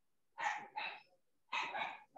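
A dog barking three short times, faint, heard over a video-call microphone: two quick barks about half a second in, then another near the end.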